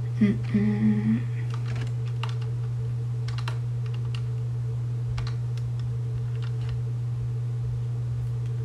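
Pocket calculator keys being pressed, a scattered run of small clicks, over a steady low hum. Near the start, a short hummed "mm" from a voice.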